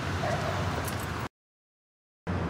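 Steady low background noise of a street scene, which cuts off to dead silence about a second and a quarter in.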